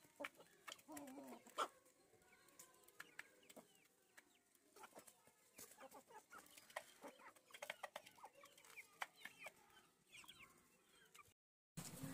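Parrot-beak Aseel chickens clucking faintly in short, scattered calls, among frequent small clicks and taps.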